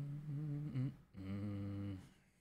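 A man humming with his mouth closed: two drawn-out notes, the first wavering slightly and ending about a second in, the second lower and held steady.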